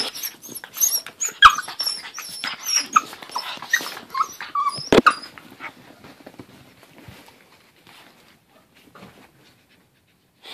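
A bull terrier and a Jack Russell terrier play-fighting: growls, high-pitched whines and sharp snaps in a busy run for the first five seconds, with one loud knock about five seconds in. The sounds then thin out to faint scuffles and fade.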